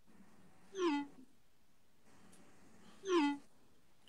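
Two short meow-like calls, alike in shape and falling in pitch, about two seconds apart.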